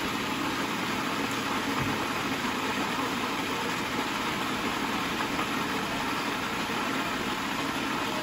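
Cuisinart food processor running steadily, its blade chopping basil, garlic and olive oil into pesto.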